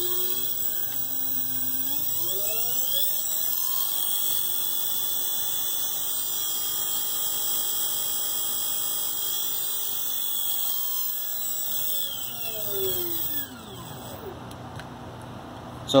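A 2001 Ford car alternator run as a motor from a brushless speed controller, whining as it spins. The pitch rises over the first couple of seconds as it speeds up, holds steady at speed, then falls as it winds down near the end. A steady high electronic whine from the speed controller sits over it.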